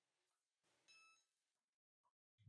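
Near silence, with a faint short electronic beep about a second in.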